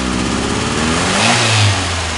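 Warm Fiat petrol engine, choke off, revved by hand at the carburettor linkage. The engine speed climbs for about a second and a half, then falls back toward idle. The engine has an odd chugging in its running and sometimes dies when warm.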